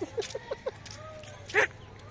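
Men laughing: a quick run of short "ha-ha" pulses, then one louder burst of laughter near the end.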